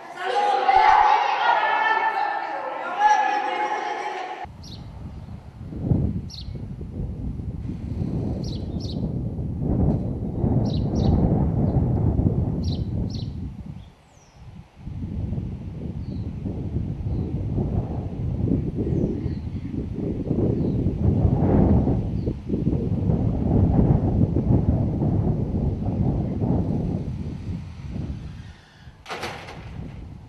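Voices echoing in a large school gym for about four seconds. Then a sudden change to wind buffeting the camera's microphone outdoors, a loud, gusting low rumble with brief dips, and a few faint high chirps above it.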